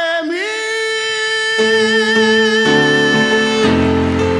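A male bolero singer holds one long note live, gliding up to it just after the start, with grand piano chords coming in beneath him after about a second and a half and again near three seconds.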